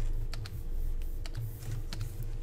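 A few light, irregularly spaced clicks and taps from the computer drawing setup, over a low steady hum.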